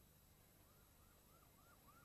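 Faint siren sounding quick, repeated rise-and-fall whoops, about three a second, starting just under a second in over near silence.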